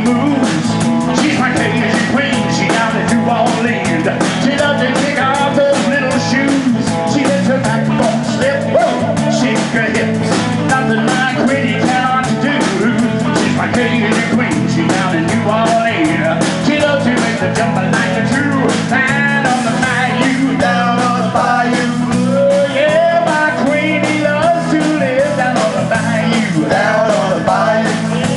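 Live blues-rock band playing an up-tempo Cajun boogie: electric guitars, bass and drum kit, with a bending lead line at the vocal microphone over them.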